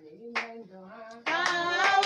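Voices singing a praise song with hand claps on the beat; about a second and a quarter in, more voices come in louder.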